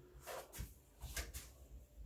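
A few faint clicks and light knocks, about four in two seconds, as of small objects being handled.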